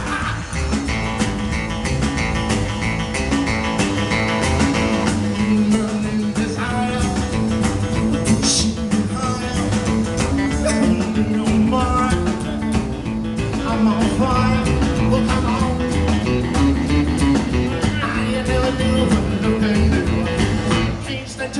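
Live rockabilly band playing on stage: electric and acoustic guitars, upright double bass and drum kit, with a steady beat.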